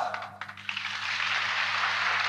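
Audience applause swelling up about half a second in, just after a rousing line in an old recorded speech, over a steady low hum from the recording.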